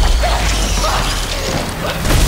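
Dense action sound effects from a film trailer: a heavy low rumble under clattering, mechanical noises.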